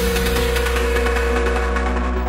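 Theme music ending on one loud sustained chord, a steady held tone over a deep bass drone.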